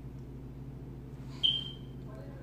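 A single sharp clink about one and a half seconds in, with a high ringing tone that fades within half a second: a metal spoon striking a bowl. A steady low hum runs underneath.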